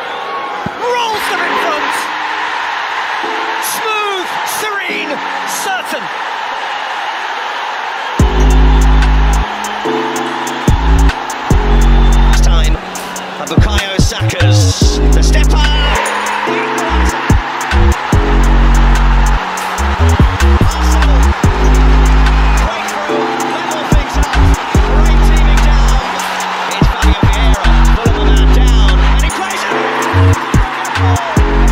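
Football stadium crowd noise from the match broadcast. About eight seconds in, a loud bass-heavy music track comes in over it, its beat and bass dropping out and returning several times.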